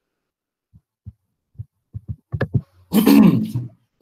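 A man clears his throat loudly about three seconds in, a short rasping sound with a voiced pitch, preceded by a few faint low thumps and clicks.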